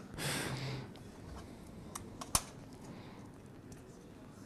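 A short breath into a headset microphone, then three sharp laptop key clicks about two seconds in, the last one the loudest.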